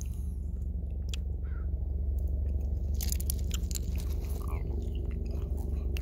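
Distant Boeing AH-64 Apache attack helicopter: a steady, low rotor drone with a pitched hum, growing slightly louder, with a few faint clicks over it.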